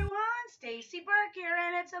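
A woman's voice singing a few short sing-song phrases in a high pitch, then speech beginning near the end.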